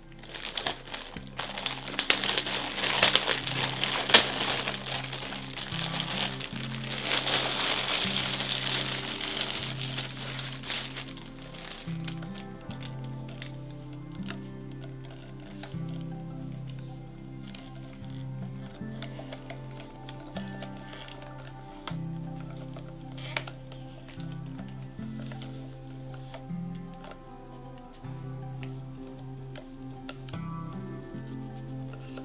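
Clear plastic wrapping crinkling and rustling as it is pulled open and worked off a resin ball-jointed doll body, loud for about the first twelve seconds and then dying down to faint rustles, over steady background music.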